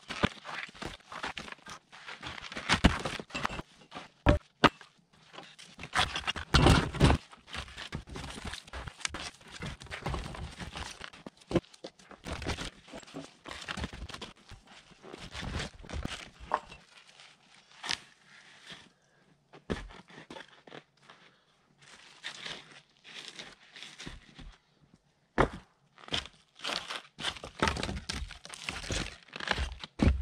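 Wooden sawmill slabs being thrown down and shifted on a snowy trail, with irregular wooden thunks and knocks, together with boots crunching through snow and stepping on the loose slabs.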